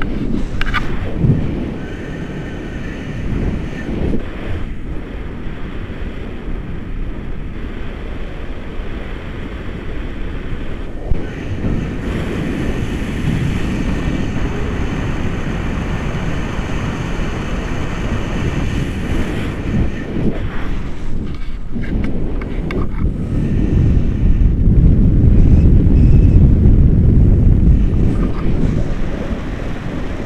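Wind rushing over the camera microphone of a paraglider in flight, a steady low rumble that gets louder near the end.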